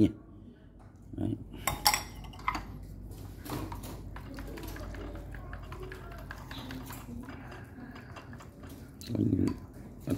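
A metal spoon clinking against ceramic bowls a few times, then chopsticks quietly stirring fresh pig's blood in a ceramic bowl. A short voiced sound comes near the end.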